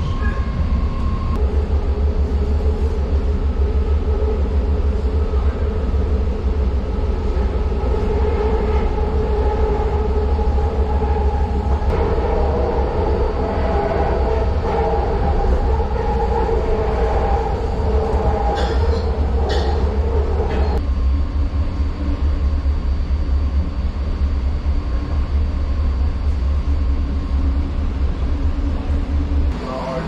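A BART train in motion, heard from inside the passenger car: a loud, steady rumble from the running gear. A whining tone rides over it for a stretch in the middle and stops abruptly about two-thirds of the way through.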